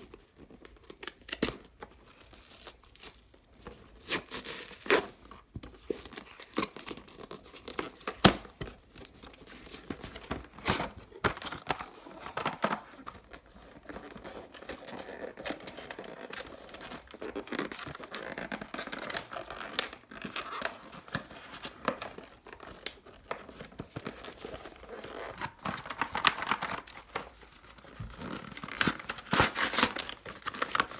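Cardboard phone packaging handled and opened: scattered taps and clicks as boxes are gripped and slid apart, with rustling and tearing of the packaging. The loudest knocks come about eight seconds in and near the end.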